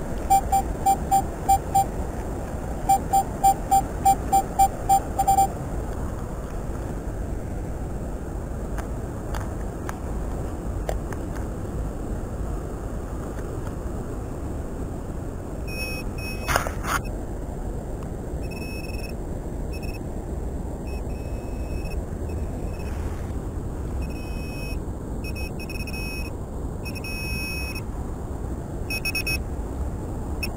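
Handheld metal-detecting pinpointer beeping in a fast, even run of short beeps, about three a second, as it is held to the soil of a dug hole: the sign of a metal target close to its tip. Later come shorter, higher-pitched detector beeps in irregular bursts, and a single sharp knock.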